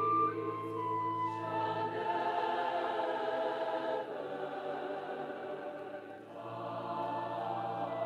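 Large mixed choir singing sustained chords. One phrase dies away about six seconds in and the next begins.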